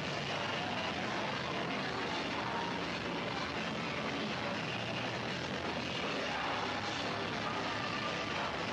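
Punk/hardcore band playing live, heard through an overloaded camcorder microphone as a steady, dense wash of distorted sound.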